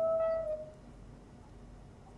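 A steady electronic tone with fainter overtones, dropping slightly in pitch as it fades out within the first second; then only a faint low hum.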